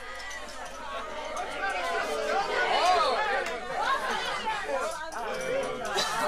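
Several people's voices talking over one another, fading in from silence and growing louder over the first few seconds: a spoken chatter intro opening a hard rock album track.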